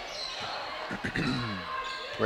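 A basketball dribbled on a hardwood gym floor, a few bounces about a second in, over the steady murmur of a crowd in a large gym. A short voice with a falling pitch follows the bounces.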